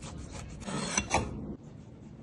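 Boiled egg being grated by hand on a flat stainless-steel grater, rasping strokes against the metal teeth. The scraping grows loudest about a second in, then drops off suddenly to quieter strokes.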